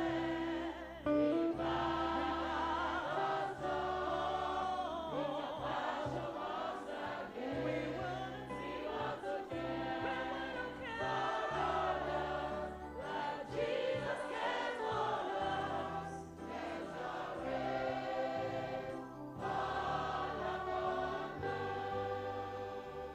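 Church choir singing a gospel song over a bass line that shifts every second or two.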